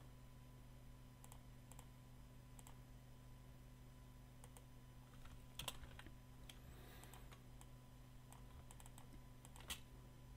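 Near silence broken by faint, scattered clicks of a computer mouse and keyboard, about a dozen, the loudest about halfway through and just before the end, over a low steady hum.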